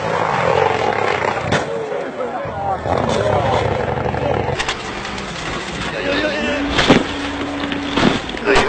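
A rally car's engine revving up and down as the car comes along a gravel forest stage, with a few sharp knocks and spectators' voices mixed in. The engine settles to a steady pitch near the end.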